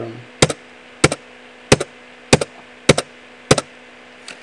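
Six sharp clicks from a computer keyboard key, evenly spaced at a little under two a second, each a quick double click as the key goes down and comes back up. The keystrokes confirm verification fields one after another.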